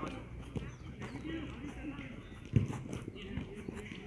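Indistinct voices of players on a sports field, with scattered footfalls and knocks and one sharp thump about two and a half seconds in.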